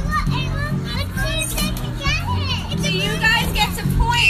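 A group of small children shouting and squealing excitedly, several voices at once, with music playing in the background.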